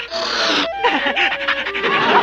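A cartoon voice panting like a begging dog, breathy for the first moment, then going into short rising-and-falling whines.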